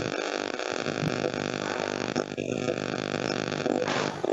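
A steady, buzzing drone at one fixed pitch: unwanted background noise coming through a participant's open microphone on a video call.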